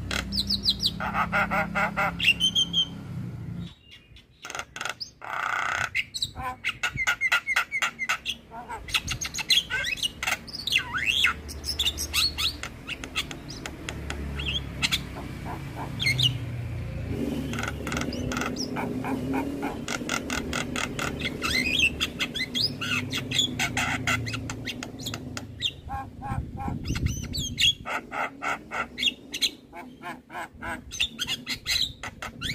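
Javan myna (jalak kebo) singing at length: fast runs of sharp repeated chattering notes, gliding whistles and harsh calls. There is a short pause about four seconds in, and a lower, rougher stretch of calls in the middle.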